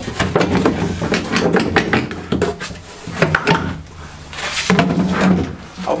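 A carpeted floor panel being handled and lifted out of the cabin sole: a run of knocks, clunks and scrapes, with a louder scraping stretch about four and a half seconds in.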